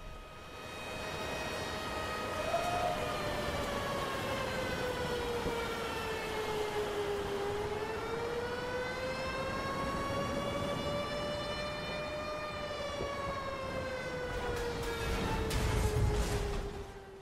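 Air-raid siren wailing as one slow, drawn-out tone. It sinks in pitch, climbs back up about three quarters of the way through, and sinks again.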